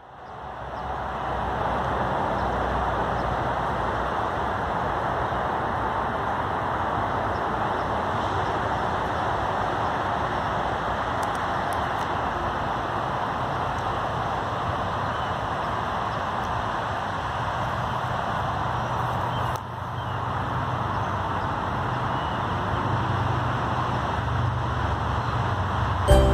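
Steady rush of distant road traffic, fading in at the start, with a brief dip about twenty seconds in.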